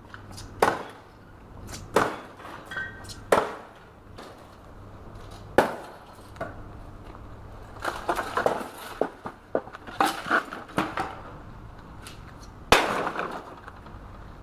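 Sledgehammer blows smashing the wooden case of a dismantled piano: four heavy strikes in the first six seconds. Then wood cracks and splinters as boards and string wire are wrenched out of the pile, and one loud crash rings out near the end.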